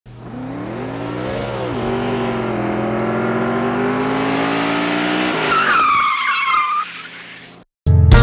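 A car engine revving, its pitch climbing slowly, then a tire squeal about five and a half seconds in that fades away shortly before the end.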